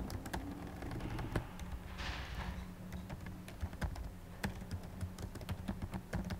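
Typing on a computer keyboard: irregular keystroke clicks, with a brief hiss about two seconds in and a steady low hum underneath.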